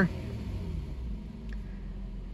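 2009 Infiniti FX35's 3.5-litre V6 idling with a low, steady rumble, heard from inside the cabin just after the accelerator is released. A faint click about one and a half seconds in.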